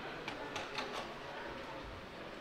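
Four quick, sharp clicks within the first second, over a steady background murmur of a large hall.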